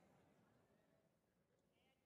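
Near silence: a pause between spoken sentences, with no audible sound.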